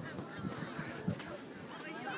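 Faint outdoor background of distant voices, with a soft thump about a second in.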